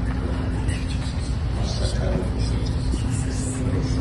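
Steady low rumble of room noise with a faint constant hum, and faint, indistinct voices.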